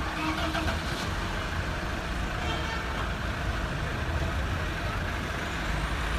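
Street traffic with a minibus engine idling close by: a steady low rumble. Faint voices are heard in the first second.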